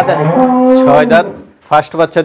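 A dairy cow mooing once, a single steady held call of just under a second that starts a moment in and dies away past the middle, with men talking around it.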